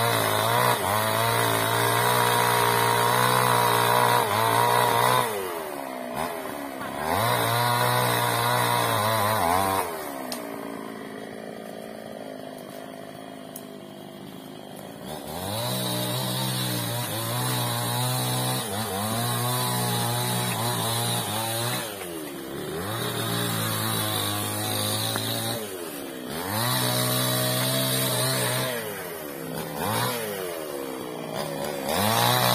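Chainsaw cutting teak wood, run at full throttle in repeated bursts of a few seconds. The pitch rises at the start of each burst and falls back to idle between them, with a longer idle stretch about a third of the way in.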